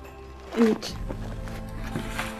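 Background film-score music with sustained tones, broken about half a second in by one brief voice sound.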